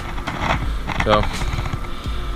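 A man's voice saying a single word, "So," about a second in, over a steady low rumble.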